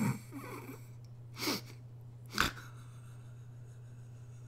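A woman's quiet, breathy laughs: the tail of a laugh, then two short nasal exhales of amusement about a second and a half and two and a half seconds in, over a steady low hum.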